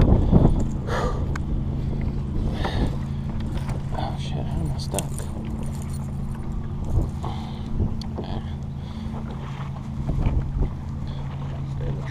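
Boat motor running steadily with a low, even hum, with a few light clicks and rattles as the hooks and wires of an Alabama rig are worked free of a fish in the landing net.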